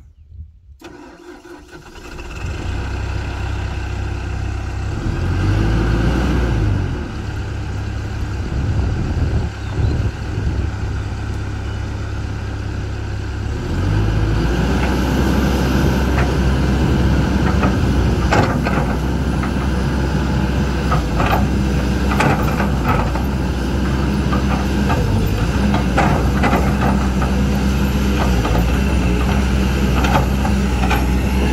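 Kobelco SK200 hydraulic excavator's diesel engine starting about two seconds in, then running, and stepping up to a higher, steady speed about fourteen seconds in. Scattered sharp clanks come in the second half as the machine lifts its boom and swings.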